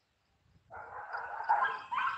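Near silence, then about two-thirds of a second in, a high-pitched animal whine begins and carries on to the end.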